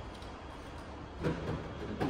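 Steady low rumble of a concrete parking garage, with one brief louder sound about a second and a quarter in.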